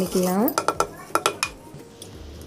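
Wooden ladle knocking against a clay pot of ragi porridge: a quick run of about seven sharp clacks, slightly ringing.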